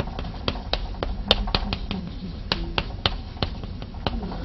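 Chalk tapping against a chalkboard while characters are written: an irregular run of short, sharp clicks.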